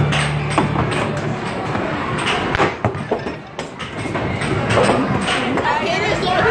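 Busy arcade background: chatter and game music, with scattered knocks and thumps from the games. A steady low hum fades out a little over a second in.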